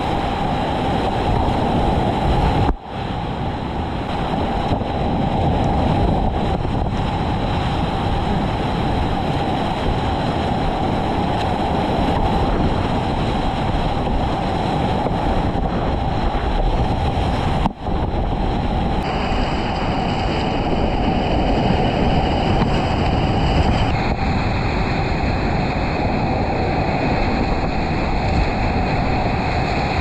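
Loud, steady rush of whitewater rapids heard from a kayak in the current, with wind buffeting the camera microphone. The sound dips sharply for a moment twice.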